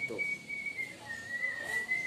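A thin, steady, high whistling tone that drifts slightly up and down in pitch and holds on without a break.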